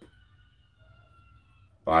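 A pause in a man's talk, nearly quiet, with a faint steady high-pitched tone for most of it; he starts speaking again just before the end.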